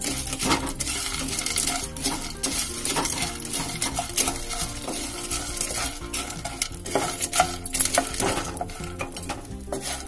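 A spatula stirring and scraping fox nuts (makhana) around a nonstick pan as they roast in ghee: frequent short scrapes and knocks over a light sizzle.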